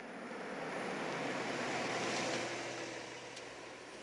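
A car pulling into a driveway, its engine and tyres swelling over the first two seconds and then fading, over a low steady hum.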